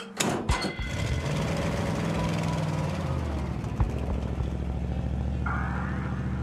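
Pickup truck tailgate shut with a few metal clunks, then the truck's engine running with a steady drone that revs up and settles as it drives off. Music comes in near the end.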